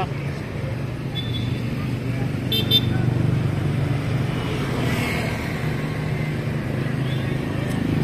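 A motor vehicle engine running steadily close by, a low even hum of street traffic, with two short high-pitched beeps about two and a half seconds in.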